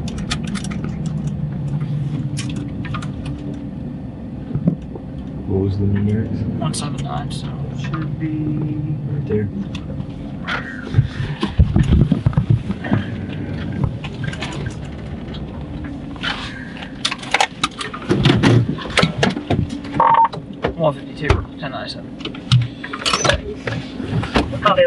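Engine and road rumble inside a moving car, with scattered clicks and knocks that become more frequent in the second half.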